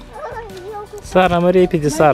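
A person's voice calling out loudly from about a second in, a held note that then slides up and down in pitch.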